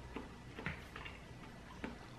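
Quiet eating sounds: a few faint, scattered clicks as a spoonful of chunky corn chowder with crunchy corn is eaten from a ceramic bowl with a metal spoon.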